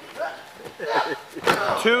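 Men talking excitedly over a wrestling bout, with a short sharp knock about one and a half seconds in.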